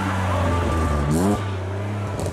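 BMW E46 coupe engine accelerating out of a hairpin: the revs climb for about half a second, then drop abruptly a little past the middle, as at a gear change.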